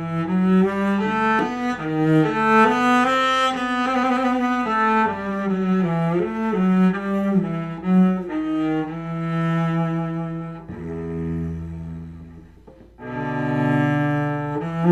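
Solo cello played with the bow, a slow melody of sustained notes. About three-quarters through, a long low note fades away, and after a brief break the playing starts again near the end.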